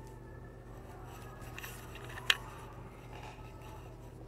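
Pencil scratching faintly on paper as it writes, with one sharp click a little over two seconds in, over a steady low room hum.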